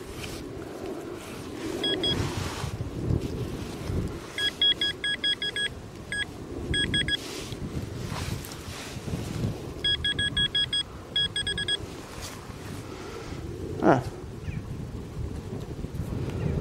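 Metal-detecting pinpointer beeping in two quick runs of short high beeps, about eight a second, as it is worked through the dug soil over a metal target, with scraping and crumbling of earth from probing the hole.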